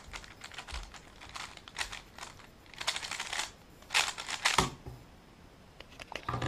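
A 3x3 speedcube being turned very fast by hand through a full solve, a rapid clicking, rattling clatter of plastic layers at about eight turns a second, coming in bursts with short pauses between. It ends about four and a half seconds in with a knock as the solve finishes.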